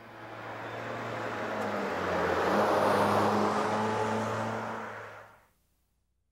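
A Chevrolet Cruze with a 1.5-litre engine drives past, its engine and tyre noise swelling to a peak about halfway through and then fading away. The engine note rises a little partway through.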